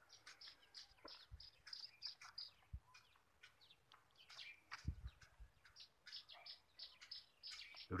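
Faint birdsong: runs of short, high chirps repeated several times a second, one run in the first few seconds and another in the second half. A few soft low thumps are heard between them.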